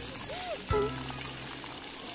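Splash-pad ground fountain jets spraying and trickling onto wet tiles, with music playing over it and a single knock about three-quarters of a second in.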